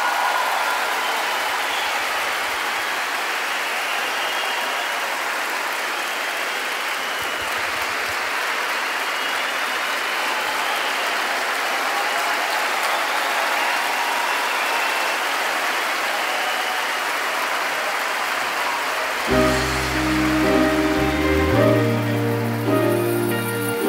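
A large concert audience applauding, steady and sustained. About nineteen seconds in, the band starts playing the song's opening notes while the applause is still going.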